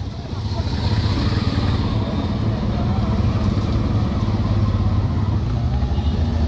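Small engine of an auto-rickshaw running steadily with a low, pulsing rumble, heard from inside its open cab; it grows louder about half a second in.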